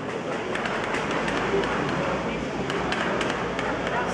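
Open-air market crowd ambience: a steady background of indistinct voices and chatter, with a few faint clicks.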